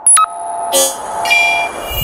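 Electronic logo sting: a sharp hit just after the start, then a held synthesized chord with a whoosh about a second in.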